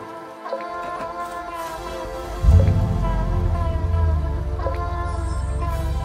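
Background music of sustained chords, with a deep bass coming in suddenly about two and a half seconds in.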